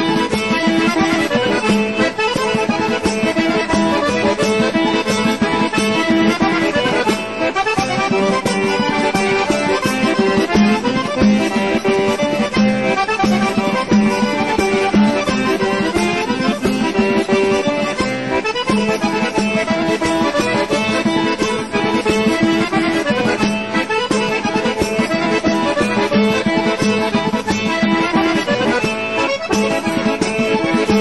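Background music: a traditional-style accordion tune.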